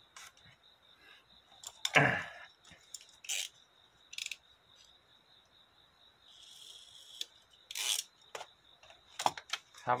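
Sheet of origami paper being folded and pressed by hand: irregular crinkles and rustles, the loudest about two seconds in, then several shorter ones and a soft sliding rustle.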